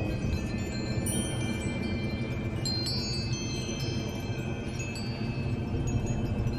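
A tree full of hanging wind chimes, metal tubes and bells, ringing in the breeze: many overlapping high tones that strike at different moments and ring on, over a low steady rumble.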